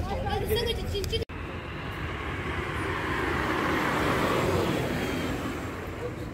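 Voices for about a second, then after a sudden cut a car drives past, its engine and tyre noise swelling to a peak around four seconds in and then fading away.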